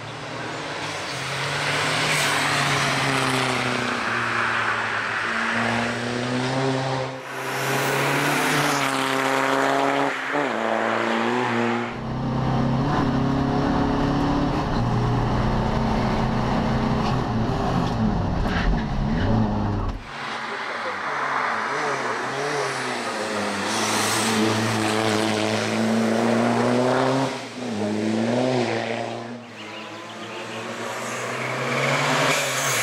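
Škoda Fabia RS race car with a turbodiesel (TDI) engine accelerating hard through the gears, its pitch climbing and then dropping back at each upshift. In the middle stretch the sound turns to a deep rumble from inside the cabin before the engine is heard from outside again.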